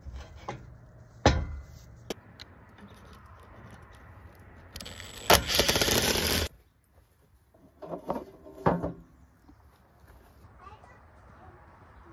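A sharp knock about a second in, then a cordless impact driver (Makita brushless) runs for about a second and a half on a screw in the trailer's carpeted bunk board, taking it out. A few lighter knocks follow.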